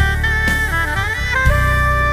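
Alto saxophone playing a smooth-jazz gospel melody over a backing track of bass and drum kit. It slides through a few notes, then holds one long note from about three quarters of the way in.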